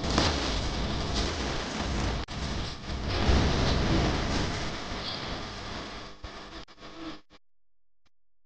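Rain sound effect: a steady hiss of heavy rain with a low rumble of thunder swelling about three seconds in, fading out and cutting off to silence a little after seven seconds.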